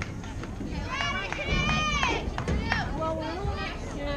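Softball players' high-pitched shouted calls and cheers, a few drawn-out calls rising and falling in pitch, the loudest about a second in.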